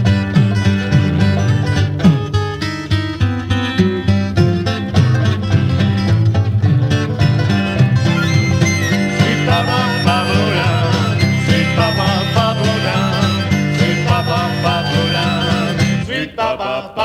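Instrumental passage of a 1973 French jug band recording: banjo and guitar picking with strong low notes underneath. A wavering higher lead line joins about halfway through.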